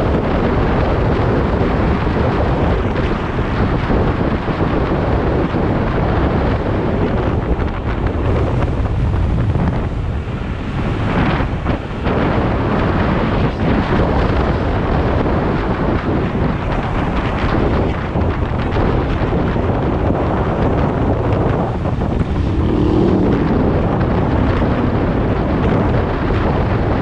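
Steady wind rushing over the microphone of a handlebar-mounted camera on an electric scooter riding at speed, mixed with road noise.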